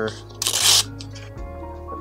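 A sheet of paper being torn: one short rip about half a second in. Steady background music plays underneath.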